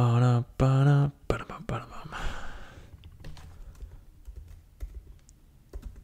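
Typing on a computer keyboard: irregular, quick key clicks that begin about a second in, after a short drawn-out vocal sound from a man.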